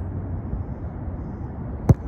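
Wind rumbling on the microphone of a phone lying on open grass, with a single sharp knock near the end.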